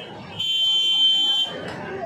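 A steady high-pitched electronic beep or tone, about a second long and starting about half a second in, over background talk.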